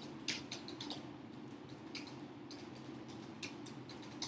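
Computer keyboard typing: a run of quick, irregular key clicks as a word is typed out, over a steady low hum.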